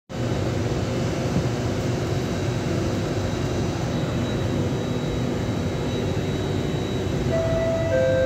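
Steady hum and hiss inside a stationary SMRT C830 (Alstom Metropolis) metro car with its doors open. Near the end a steady door-closing warning tone begins.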